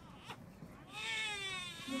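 A single high-pitched, drawn-out cry lasting about a second, starting about a second in and falling slightly in pitch.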